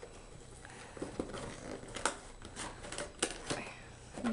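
A cardboard toy box being handled and turned over on a table, its flap starting to be opened: scattered light taps, scrapes and rustles.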